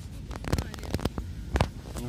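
Handling noise from a phone filming low in long grass: a few sharp clicks and rustles, the loudest near the end, over a steady low rumble.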